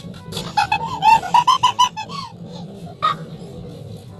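A person laughing hard in a rapid run of pitched pulses for about two seconds, then one short burst about three seconds in, over background music.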